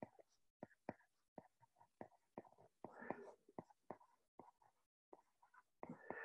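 Near silence broken by faint, irregular taps and clicks of a stylus on a tablet's glass screen as words are handwritten, about two to three a second.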